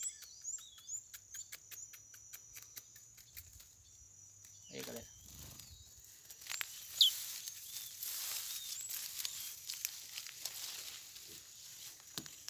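Small birds giving short, high chirps, with a quick run of faint ticks over the first few seconds and a louder, sharp call about seven seconds in. A soft rustling hiss runs through the second half.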